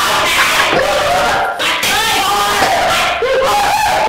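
Several men laughing hard and shouting over one another, loud and continuous.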